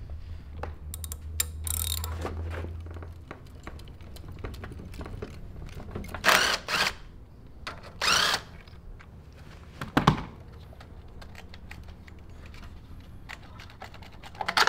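Cordless drill-driver running in two short bursts, about six and eight seconds in, loosening the fasteners of a small single-cylinder mini-bike engine's air-filter housing. Light clicks and knocks of tools and parts are heard around it, with one sharp knock about ten seconds in.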